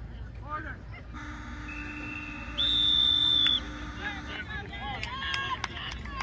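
A referee's whistle gives one long, steady, shrill blast of about a second near the middle, blown to stop the play. It sits over a fainter steady whistle tone that starts about a second in and stops a little after the blast. People's voices follow near the end.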